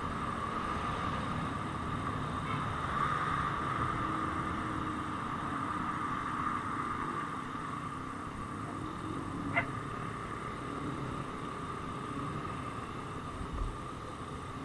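Motorcycle riding along at steady road speed: the engine runs with a continuous high whine over road and wind rumble. There is a brief sharp tick about ten seconds in.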